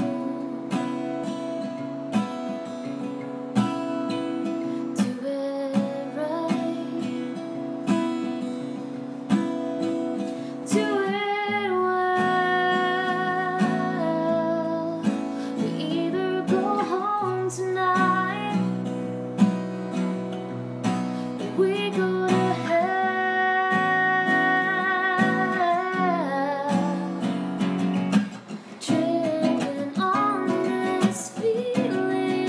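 A woman singing to her own strummed acoustic guitar. The guitar plays alone for the first ten seconds or so before the voice comes in with held, wavering notes, and both drop away briefly near the end.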